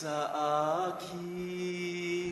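A man singing slow, drawn-out notes: a note that bends in pitch, then one long held note from about a second in.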